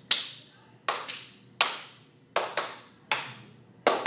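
Hand claps, about eight in an uneven rhythm, some in quick pairs, each with a short echo after it.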